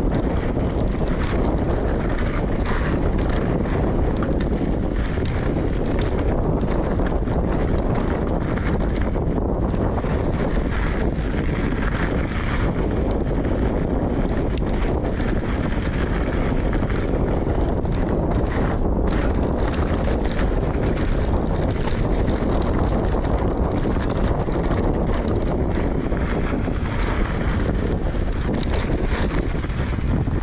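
Wind rushing over the action camera's microphone on a mountain bike descent, over the steady rumble of tyres rolling on loose gravel and rock, with frequent small clicks and rattles from the bike and the stones.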